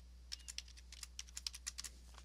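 Computer keyboard being typed on: a quick run of about a dozen keystrokes starting a moment in, over a low steady hum.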